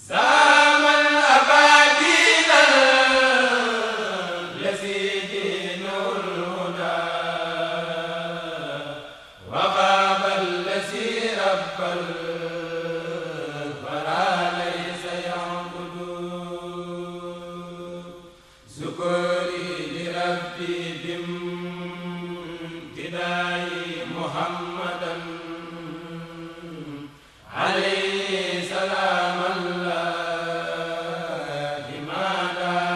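A Mouride kourel (men's chanting group) chanting a khassida, unaccompanied. It goes in long, slowly gliding phrases of about nine seconds, each starting loudly again after a brief breath pause.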